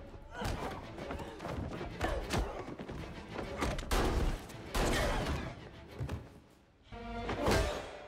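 Movie fight sound effects: a run of heavy thumps and blows, several in quick succession, over a music score.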